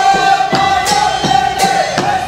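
A woman singing one long held note over a backing band with a steady drumbeat.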